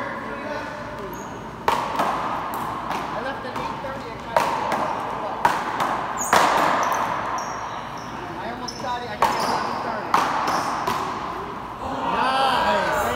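Paddleball rally: sharp cracks of wooden paddles striking the rubber ball and the ball slapping the front wall, about eight hits at irregular intervals of roughly a second, each echoing in a large hard-walled court. Voices murmur underneath.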